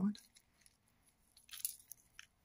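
Crushed red pepper flakes shaken out of a container onto a pizza, heard as a brief, light rattle of a few quick clicks about a second and a half in, after a short quiet stretch.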